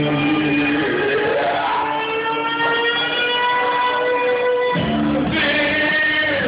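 Karaoke backing track with a man singing through a microphone over it. He holds one long note for about three seconds, then the low end of the band comes back in.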